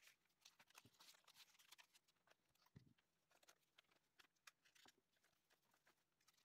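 Near silence, with faint scattered rustles and light ticks of paper strips being handled.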